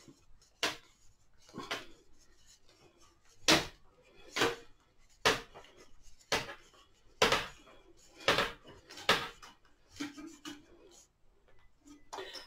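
A dozen or so sharp clicks and light knocks, roughly one a second and irregular, as a soaked willow rod is handled and bent around a round former.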